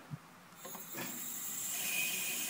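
Kone bridge crane's travel drive motor being run in one direction: a click, then a hiss and faint whine that rise in level as the motor comes up to speed.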